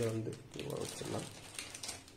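A man's voice trailing off, then faint crinkling and clicking of plastic packaging as packaged art supplies are handled.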